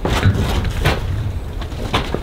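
Footsteps and a few knocks on a flat rooftop as people move and climb about on it, over a low rumbling noise.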